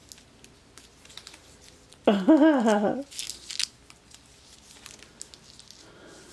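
Plastic packaging and bubble wrap crinkling and rustling in faint, scattered bursts as small erasers are handled. A short laugh about two seconds in is the loudest sound, followed by a brief sharper rustle.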